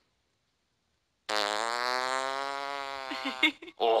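A long, drawn-out fart after about a second of silence, with a steady buzzing pitch that sags slightly over about two seconds, then a few short sputters near the end.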